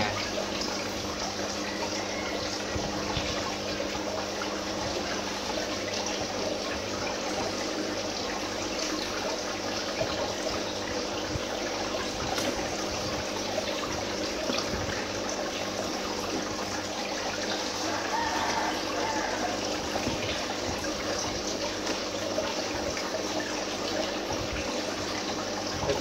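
Aquarium pump's return flow splashing and trickling steadily into the tank water, with a steady low hum under it.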